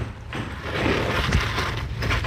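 Metal knife blade scraping and rustling through ash, dry leaves and straw as a charred, fire-grilled fish is raked out of the embers onto a banana leaf, with a steady low rumble underneath.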